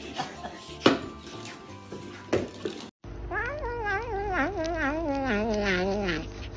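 A few sharp knocks, the loudest about a second in, then a cat giving one long wavering meow that slowly falls in pitch while it eats.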